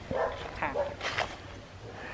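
A few short, faint, high-pitched vocal sounds, like soft laughs or whimpers.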